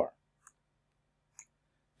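Two faint, short computer mouse clicks about a second apart, from moving a bishop on an on-screen chess board.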